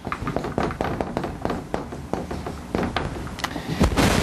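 Writing on a board: a busy run of short taps and scratchy strokes as the sentence is written out.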